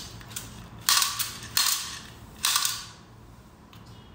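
Yellow toy gun fired at close range: four sharp bursts, the first about a second in and the last at about two and a half seconds, each trailing off in a short hiss.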